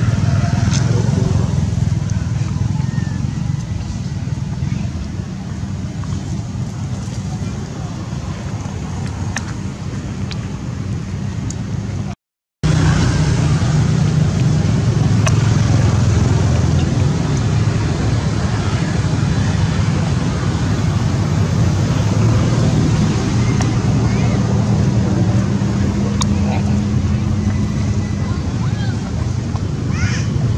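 Steady low rumble of outdoor background noise, with a dropout to silence for under half a second about twelve seconds in.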